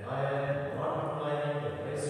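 A man's voice chanting a liturgical text on a near-steady pitch.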